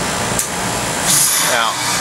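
Heat pump outdoor unit running, its compressor giving a steady hum under loud, even machine noise, with the condenser fan motor lead disconnected from the defrost board. A brief click just under half a second in and a short hiss about a second in.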